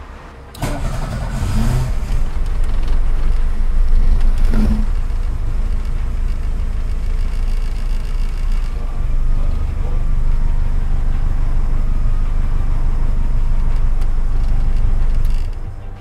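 Volkswagen Parati Surf's four-cylinder engine started remotely from a smartphone alarm app: it starts about half a second in and then runs steadily at idle.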